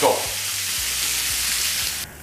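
Steak and shrimp frying in a hot cast iron pan: a steady sizzling hiss that cuts off about two seconds in.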